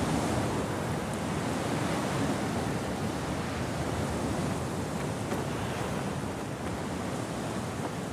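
Steady wind sound effect: an even rushing noise with no pitch or rhythm.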